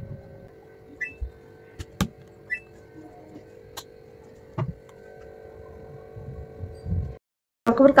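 Steady hum from a top-loading washing machine, with several sharp clicks and a few soft knocks as its drum is loaded and the machine handled. The sound cuts off suddenly near the end.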